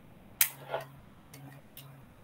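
A sharp click about half a second in, followed by a softer click and a couple of faint ticks, over a faint low hum.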